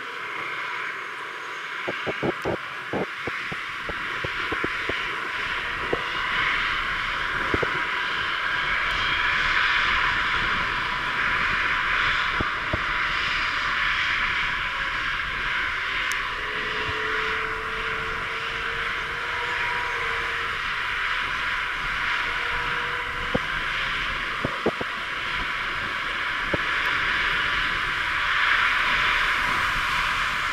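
Airbus A380-861's four Engine Alliance GP7270 turbofans running at raised power while the airliner holds still on the runway: a static engine run-up before takeoff. A steady jet roar that grows a little louder about ten seconds in.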